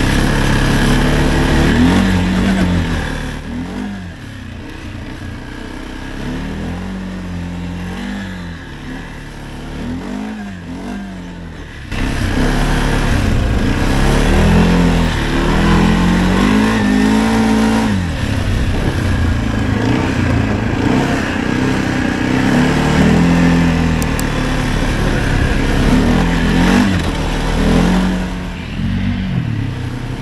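Arctic Cat Alterra 700 ATV's single-cylinder engine revving up and down over and over as the quad is ridden under throttle. It is quieter for several seconds, then louder again from about twelve seconds in.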